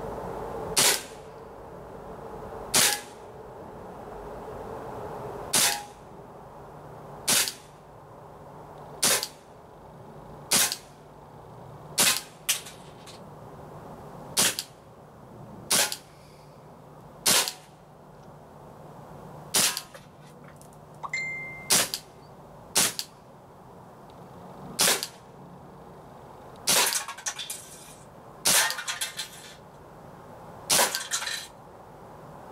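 Umarex P08 Luger CO2 blowback BB pistol firing about twenty shots in slow succession, roughly one every one and a half to two seconds, each a sharp pop with the snap of the blowback toggle. A short metallic ping about twenty-one seconds in is a steel BB striking the tin can.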